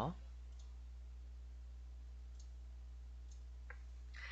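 A few faint clicks over a steady low electrical hum, the clearest click shortly before the end.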